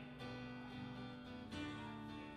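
Two acoustic guitars playing sustained chords, with a chord change about one and a half seconds in.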